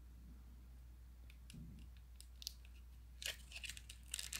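Faint handling noise of a plastic flip phone being turned in the hand: a few light scattered clicks, with a short cluster of clicks near the end, over a low steady hum.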